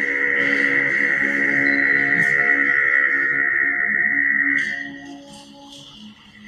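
Male vocal ensemble with oktavist (basso profondo) voices singing a held chord, which fades out about five seconds in. A few faint ticks follow.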